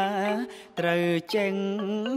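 A man chanting a Khmer poem in long, held, melismatic lines, with a short break about half a second in.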